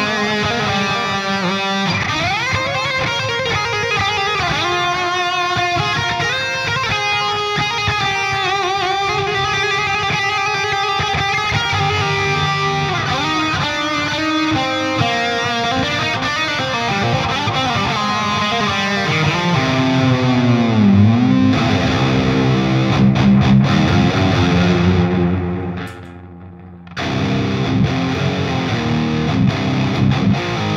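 Electric guitar played through a Driftwood amplifier with the Devil's Triad pedal's delay and reverb on together. Lead lines have sustained notes that ring into each other, with slides, and a deep dip and return in pitch about two-thirds of the way in. The playing stops briefly near the end, then resumes with lower, rhythmic notes.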